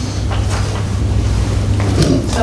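Steady low rumble with faint background noise and no speech, in a pause in a meeting room.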